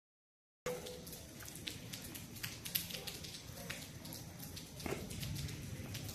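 Faint room noise with a scattering of small, sharp clicks and ticks, after the track is dead silent for about the first half-second.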